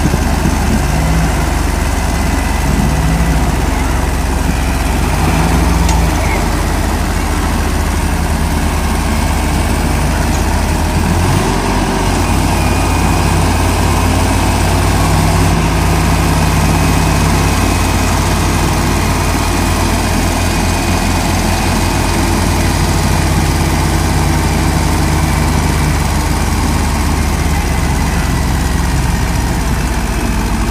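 Two tractor diesel engines, a Mahindra 575 DI and a Deutz-Fahr, running hard under load as the chained tractors pull against each other in a tug-of-war. The steady engine drone shifts in pitch a couple of times around the middle.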